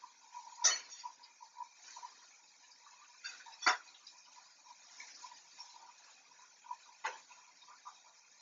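A cooking utensil knocking and scraping against a pan on the stove, with three sharp clinks, the loudest about halfway through, and faint small ticks between them.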